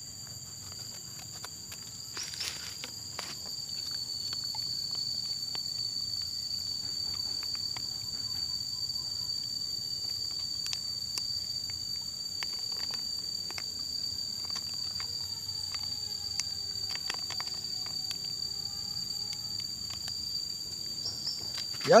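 A steady, high-pitched insect drone throughout, with scattered faint clicks and rustles from a plastic sachet being cut open with scissors and handled.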